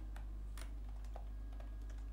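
Computer keyboard typing: a handful of separate keystrokes, over a steady low hum.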